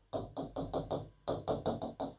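Stylus marking a touchscreen whiteboard in a quick run of about nine short, even taps, four to five a second, as dashed lines are drawn stroke by stroke.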